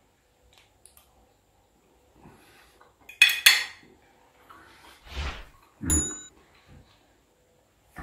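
Metal fork clinking against a ceramic plate while eating: a quick cluster of clinks about three seconds in, then a single tap that rings briefly about six seconds in.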